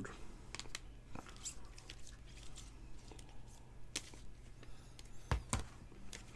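Clear plastic top-loader card holders clicking and tapping against each other as trading cards are handled and stacked: a few scattered clicks, the loudest pair about five and a half seconds in, over a low steady electrical hum.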